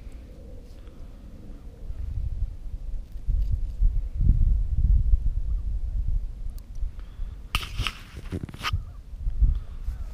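Low, uneven wind rumble on the microphone, with a short louder burst of rustling and handling noise about three quarters of the way through.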